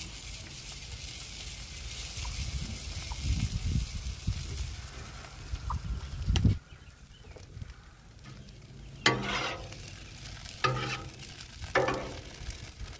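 Butter sizzling on a hot steel flat-top griddle as it is squeezed over French toast roll-ups. About six and a half seconds in there is a sharp thump, after which the sizzle dies down.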